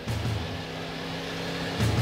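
School bus engine running as the bus drives at speed over a dirt track, mixed with a music score.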